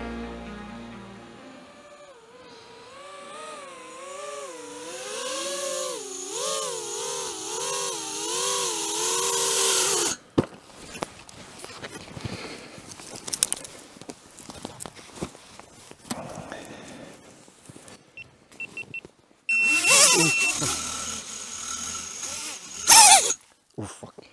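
A motor running for several seconds with its pitch rising and falling again and again, then cutting off abruptly. After it come scattered clicks and knocks, a few short high electronic beeps and a longer one, and two loud noisy bursts near the end.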